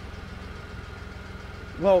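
A car engine idling steadily with a low, even rumble.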